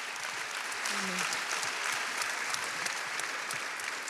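Audience applauding steadily, a dense even patter of many hands clapping.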